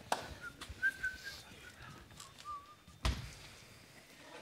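Performers moving on a wooden stage floor in sneakers: a few faint, short, high squeaks and a single sharp thump about three seconds in.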